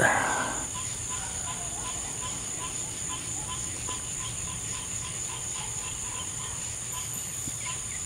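Night insects, crickets, calling in a steady high-pitched chorus, with a fainter, lower call pulsing regularly about three times a second.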